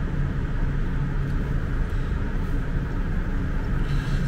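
Steady low background rumble with a faint hum, even throughout with no distinct clicks or knocks.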